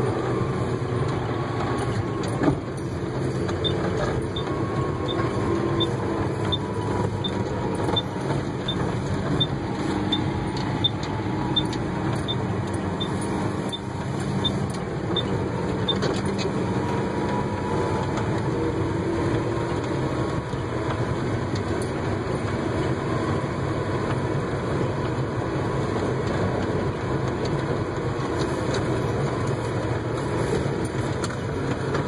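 John Deere tractor's diesel engine running steadily under way, heard from inside the cab. A light, regular tick of about two a second runs through the first half.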